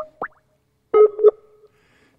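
Skype call sounds: a couple of short rising blips at the start, then about a second in a pair of short ringing tones, as an outgoing Skype call is placed.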